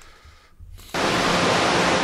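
A loud, steady hiss of noise cuts in suddenly about a second in, after a quiet moment: the background noise of a played-back news report starting.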